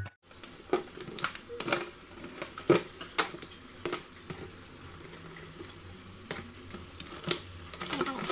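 Tap water running into a stainless steel sink holding live mud crabs, with frequent sharp clicks and scrapes of hard shell against the steel.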